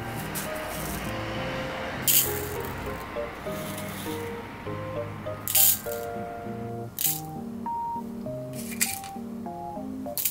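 Soft background music with a gentle stepping melody, over which small plastic beads rattle in plastic compartment boxes as they are handled, with a few sharp rattles, the loudest about two and five and a half seconds in.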